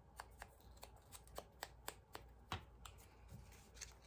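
Faint, irregular light taps and paper rustle: a small ink applicator dabbed against a cut-out paper word to ink its edges.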